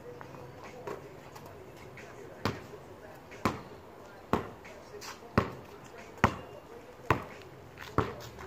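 Basketball dribbled on a concrete driveway, bouncing about once a second, the bounces growing louder near the end.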